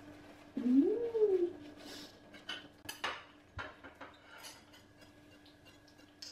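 A short meow-like vocal call about half a second in, rising and then falling in pitch, followed by a few scattered light clicks and taps of things being handled on a table.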